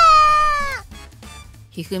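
A woman's long, high-pitched scream, voice-acted, falling in pitch and ending under a second in; faint background music follows.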